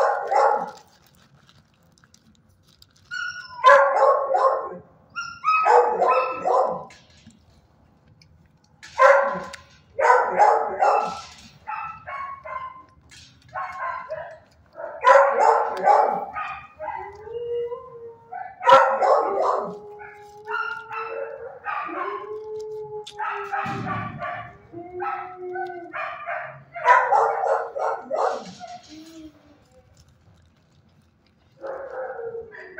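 Shelter dogs barking in repeated bursts of several barks every few seconds, with drawn-out wavering calls in the middle of the stretch.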